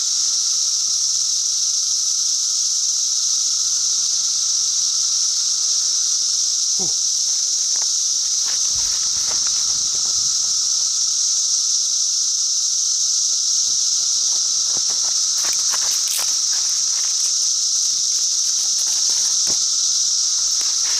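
Loud, steady chorus of periodical cicadas: a continuous high buzzing drone. A few brief clicks and crackles come through it as a paper towel is set burning and dry sticks are laid over the flames.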